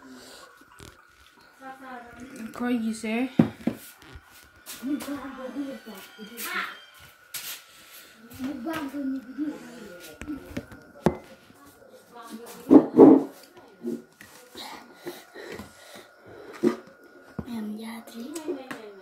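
Children's voices talking, with a burst of laughter a little after the middle, and scattered clicks and knocks from the phone being handled. A faint steady high whine sits underneath.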